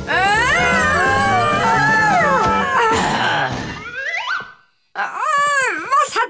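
Several cartoon voices cry out together in long, gliding wordless calls. A rising glide about four seconds in is followed by a short break, then one wavering call near the end.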